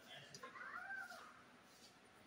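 Faint background voices in a room, with one high call that rises and falls about half a second in.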